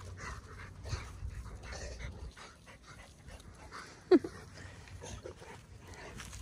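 Dogs playing with balls on grass: soft, irregular scuffling and breathing noises, with one short yelp that falls in pitch about four seconds in.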